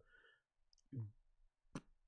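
Near silence, broken by a brief voiced sound from a person about a second in and a single sharp click near the end.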